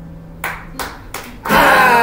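The last guitar chord dies away, then three sharp hits come evenly spaced about a third of a second apart, counting in the next part. Acoustic guitar and singing come in together on the following beat, about one and a half seconds in.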